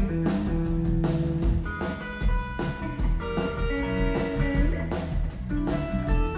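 Live blues band playing an instrumental passage: electric guitar holding single notes that change every half second or so, over bass and a drum kit keeping a steady beat.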